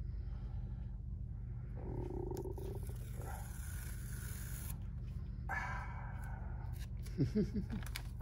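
A running machine makes a steady low, rapid pulsing throughout, with a stretch of high hiss about three seconds in and brief handling sounds at the bench.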